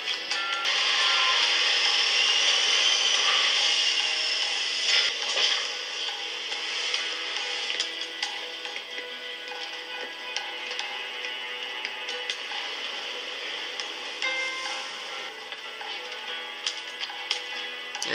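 Animated-series soundtrack: music score with a loud steady rush of the Marauder spaceship for the first few seconds, then quieter sustained music with scattered mechanical clicks.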